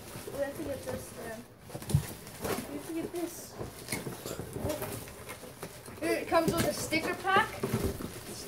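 Indistinct voices talking, with cardboard packaging knocking and scraping and plastic wrap rustling as a boxed scooter is handled and pulled out of its box. A sharp knock comes about two seconds in.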